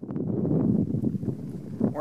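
Wind buffeting the microphone outdoors on a snowy mountain slope: a steady, rough low rumble.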